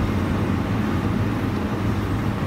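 A steady low rumble of background noise, strongest in the deep bass, with no distinct events.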